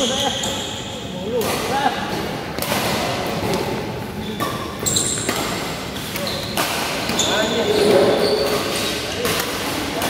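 Badminton rally in a large indoor hall: rackets hit a shuttlecock about once every second or so, sharp and echoing, with shoes squeaking briefly on the court mat between shots.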